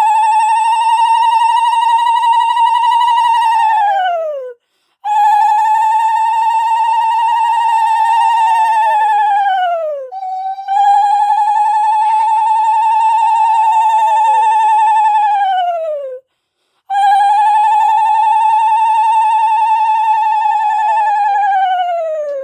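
Bengali ululation (uludhwani): a woman's high, trilling call held four to five seconds at a time, four times in a row with short breaths between, each call falling in pitch as it dies away. It is the auspicious call that marks the giving of the Bhai Phonta.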